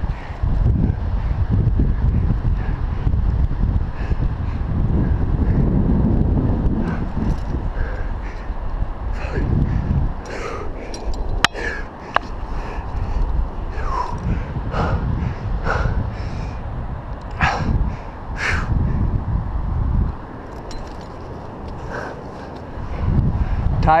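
Wind buffeting a head-mounted camera's microphone, under a climber's breathing. In the second half come a string of short, hard exhalations and grunts of effort, with a single sharp click about eleven seconds in.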